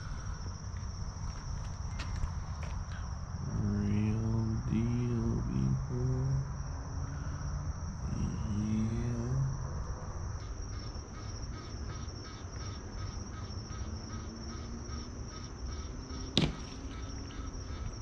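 Crickets and other night insects trilling steadily, high-pitched. A low, muffled voice comes in briefly twice in the first half, a pulsing chirp of about three to four a second runs through the second half, and there is one sharp click near the end.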